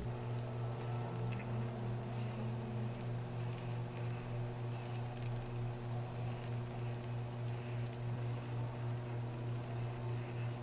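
Makeup sponge dabbing concealer onto the face: soft, repeated patting, heard over a steady low hum.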